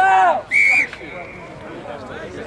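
A loud shout, then about half a second in a short blast on a referee's whistle that trails off into a fainter tone, over a background of crowd noise at the touchline.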